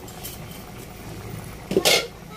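Coconut-milk vegetable stew boiling in a pot, a steady bubbling noise, with one brief loud clatter near the end.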